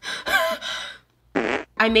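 A woman's voice briefly, then about one and a half seconds in a short buzzing noise lasting about a third of a second, like a blown raspberry.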